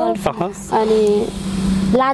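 A woman speaking, her words not caught by the recogniser, over a steady low hum.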